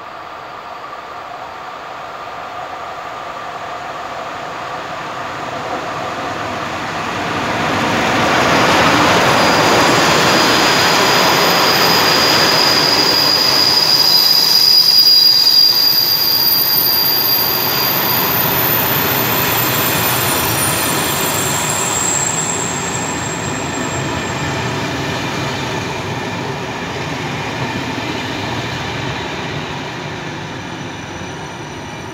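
An EU07 electric locomotive hauling a passenger train comes up and passes close by, the sound swelling over the first several seconds. Its coaches then roll past on the rails, with high wheel squeal in the middle stretch, and the noise slowly eases as the last coaches go by.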